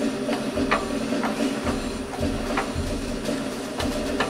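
Hydraulic press's pump motor running with a steady hum, with a few scattered light clicks over it.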